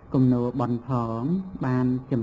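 A man's voice reciting a Khmer Buddhist Dhamma text in a chanted cadence, each phrase held on long, nearly level notes with short breaks between them.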